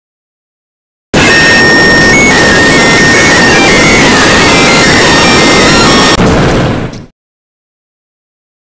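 Extremely loud, heavily distorted noise from an edited sound effect. It starts suddenly about a second in and holds for about five seconds, with a faint tone stepping up and down inside it, then dies away quickly.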